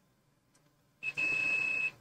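Multimeter continuity beep: one steady high-pitched tone about a second long, starting about halfway in, as the probe touches the MacBook logic board's PPBUS_G3H power rail and reads about half an ohm to ground. The beep signals that the 13 V main power rail is shorted to ground.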